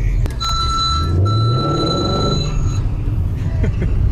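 A car engine runs with its pitch rising about a second in, under a steady, high electronic beep that sounds for about two seconds with one short break.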